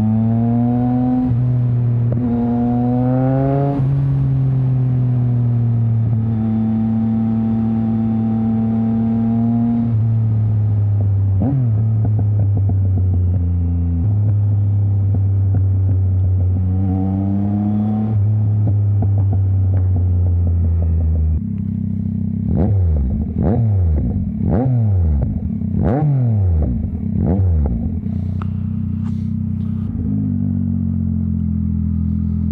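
Yamaha MT-09's three-cylinder engine through a straight-piped Mivv exhaust with no catalytic converter, pulling up through two gears and then cruising steadily. Near the end comes a quick run of about eight throttle blips, each falling away with sharp exhaust pops from the race tune.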